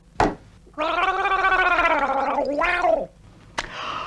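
A man gargling mouthwash: a loud voiced gargle lasting about two seconds, its tone wobbling throughout, followed by a short breath out near the end.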